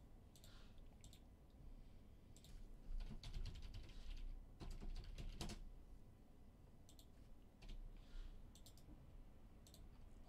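Faint typing on a computer keyboard with mouse clicks, in a few short runs of keystrokes separated by pauses.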